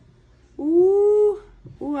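A person's voice: one drawn-out "ooh" of approval lasting under a second, its pitch arching gently, followed by the start of speech near the end.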